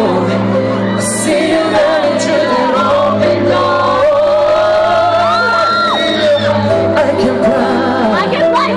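A male K-pop singer sings live over loud amplified backing music in a large hall. He holds a raised, sustained note about five seconds in. Fans in the crowd shout and whoop.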